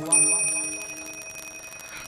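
A bell struck once just after the start, ringing with several clear tones that slowly fade away.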